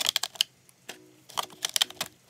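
Plastic highlighter markers clicking and clattering against a hard plastic art-case tray as they are set into its compartments: a burst of sharp clicks at the start, a short lull, then more clicks in the second half.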